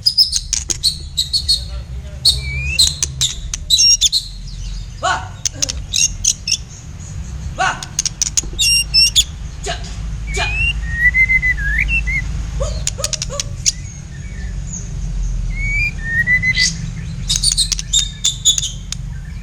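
Songbirds singing a duel, a caged black-tailed white-rumped shama and a sooty-headed bulbul: a rapid run of sharp chirps and clicks, with a few short whistled, gliding notes, the clearest about eleven seconds in and again near the end. A steady low rumble sits underneath.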